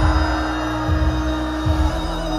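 Live band music with no singing: one long held note over deep bass hits that land roughly once a second.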